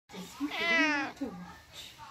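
A domestic cat meowing: one long meow about half a second in, then a short falling one.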